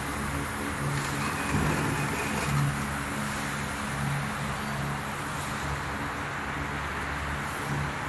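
Steady industrial machine hum, with a low drone that swells and fades about once a second over a broad mechanical noise.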